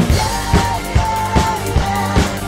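Rock drum kit, a DW Maple Collectors kit with Zildjian cymbals, played in a steady driving groove with hits about every half second, along with the song's recorded backing track.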